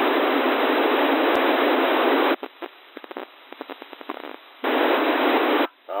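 Narrowband FM receiver hiss from a CB radio channel with the squelch open and no station on it. For about two seconds in the middle the hiss drops away to faint crackling as a weak carrier comes up, then the full hiss returns before a voice breaks through at the end.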